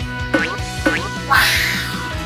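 Children's background music with steady notes and bass, overlaid with two short falling-pitch cartoon sound effects, then a hissing whoosh lasting about half a second starting just past the middle.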